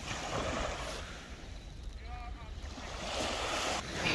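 Small waves washing onto a sandy shore, swelling near the start and again about three seconds in, with wind rumbling on the microphone.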